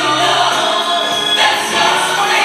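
Gospel music with a choir singing held notes.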